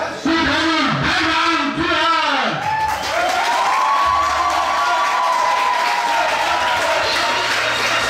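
A ring announcer calling out over a public-address system in long, drawn-out, sliding notes, with a crowd cheering under it.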